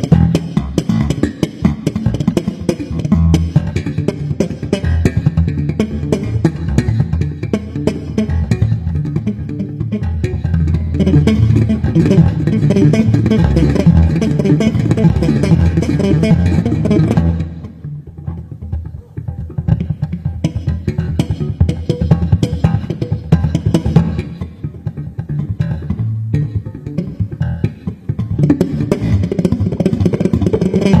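Live electric bass guitar playing fast, dense lines in a band jam with drums and guitar. About halfway through the drums and high end fall away, leaving mostly bass, and the band fills back in near the end.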